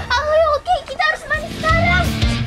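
A girl's high-pitched shouting in alarm, about four short cries in a row.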